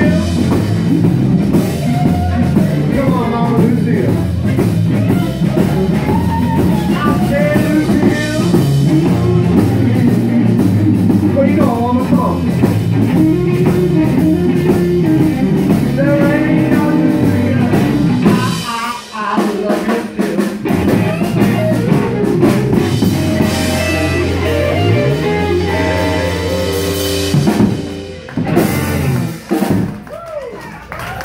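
Live rock band playing loud: electric guitars, bass and a drum kit together. The sound briefly drops out about two-thirds of the way in, then breaks into separate stops and hits near the end.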